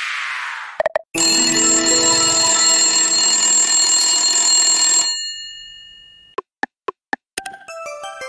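Electronic sound effects from the 20 Clovers Hot online slot game. A falling whoosh fades out as the reels settle, and after a few clicks a bright ringing win jingle plays for about four seconds while the wild symbols pay out. A few short blips follow, then near the end a chime rings out as the card gamble screen shows a win.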